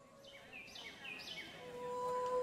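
Faint bird chirps, about four short sweeping calls in quick succession, over a soft outdoor ambience hiss. A steady low tone comes in near the end.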